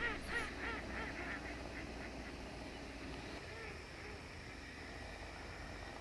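A large flock of waterfowl on a lake calling faintly: a quick run of calls in the first second, then a few scattered calls around the middle.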